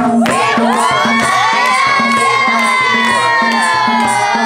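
Several voices holding one long high call together, sinking slightly in pitch, over a steady madal drum beat.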